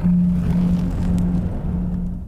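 Trailer sound design: a sudden loud hit opens a rumbling noise over a held low drone note, which carries on and begins to fade near the end.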